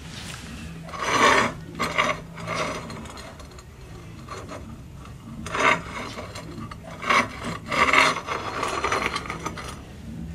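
Several short scrapes and rubs as brick pieces and an aluminum brazing rod are slid and shifted over a stone tile around an aluminum workpiece.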